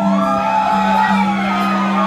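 Live country band playing, holding long low sustained notes, with whoops and shouts from the crowd over the music.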